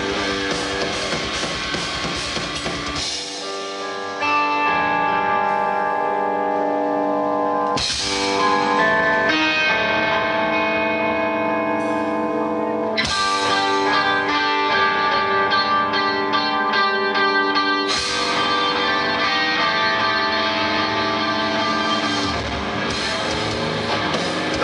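A metal band playing live, heard from the crowd. About three seconds in, the low end drops away and long ringing guitar chords hang over the stage, broken by sharp full-band hits roughly every five seconds; the heavy bass comes back in near the end.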